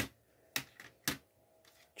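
Three sharp plastic clicks about half a second apart, then a couple of faint ticks, as a CD jewel case is handled.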